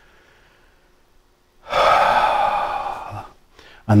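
A man's audible breath: a faint in-breath, then a long sighing out-breath of about a second and a half, starting just under two seconds in.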